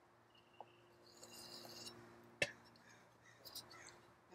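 Faint steady hum of an electric potter's wheel while a fettling knife scrapes lightly at the soft clay of a freshly thrown bottle form, with one sharp click about two and a half seconds in.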